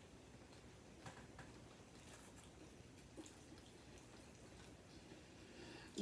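Near silence with faint chewing and a few soft mouth clicks scattered through.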